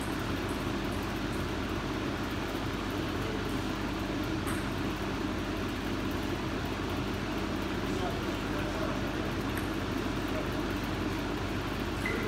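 Steady low hum of a large hall with indistinct voices, and a few faint sharp clicks of table-tennis balls being hit or bouncing, spaced several seconds apart.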